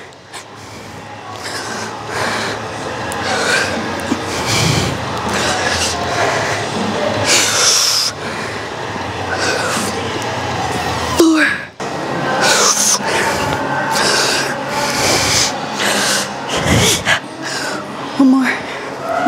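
A woman breathing hard under load during barbell hip thrusts, with repeated forceful hissing exhales, picked up close on a body mic. A single sharp knock comes a little after the middle.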